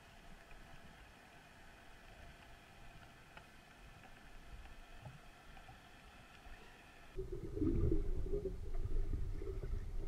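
Underwater sound picked up by a camera. A faint steady hum runs for about seven seconds, then switches suddenly to much louder low rumbling water noise as the camera moves with the freediver.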